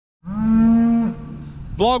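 A cow mooing: one loud, long call whose pitch drops near its end before it fades.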